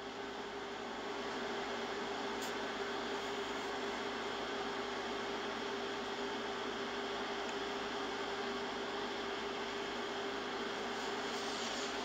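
Steady hiss with a constant low hum tone underneath, even in level throughout: background noise from the live stream's open microphone.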